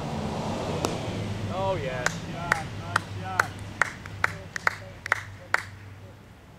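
Cricket bat striking the ball once, about a second in, then spaced hand claps, about two a second, applauding the boundary four.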